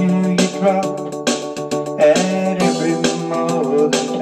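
Electronic keyboard playing the instrumental intro of a country song: held chords with a bending melody line over a steady, rhythmic beat.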